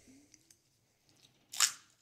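Plastic juice bottle's screw cap being twisted open, with a short, sharp snap about one and a half seconds in as the seal gives way.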